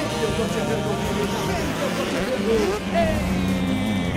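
85cc two-stroke motocross bike engines revving and rising and falling in pitch as the bikes race, with an announcer's voice in the background. Near the end, one engine climbs in pitch as it accelerates.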